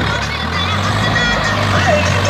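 Swaraj 744 XM tractor's diesel engine running steadily under load as it hauls a heavily loaded trolley.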